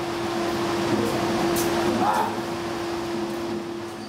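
Steady machine hum and hiss of room ambience, with a brief faint voice about two seconds in; the sound fades out at the very end.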